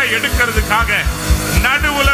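A man preaching loudly into a microphone over background music: a held keyboard pad with a low, pulsing beat.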